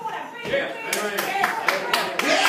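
Hand clapping in a steady rhythm, about two claps a second, with voices over it.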